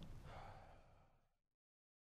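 Near silence: faint room tone fading out to complete silence about one and a half seconds in.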